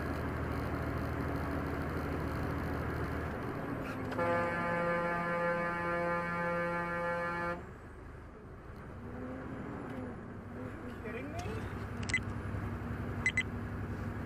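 Steady road and engine noise heard from a truck's dashcam, with one vehicle horn blast held steady for about three and a half seconds in the middle. Two sharp clicks come near the end.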